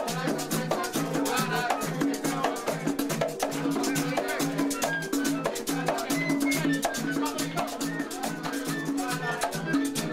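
Live plena music from a parranda group. Plena hand drums (panderos) beat a steady repeating pattern of low and higher strokes, with güiro scraping and other hand percussion, and voices over the top.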